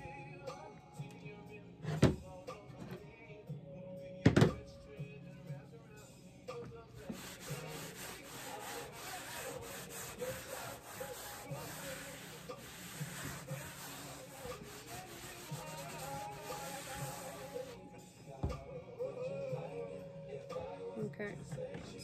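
Soft background music under the handling of objects on a tabletop: two sharp knocks a couple of seconds apart early on, a rubbing, scraping noise lasting about ten seconds in the middle, and a weaker knock near the end.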